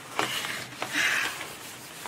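Paper tissues being rubbed over a wet studio desk to mop up spilled water: a few light ticks in the first second, then a short soft rustle around the middle.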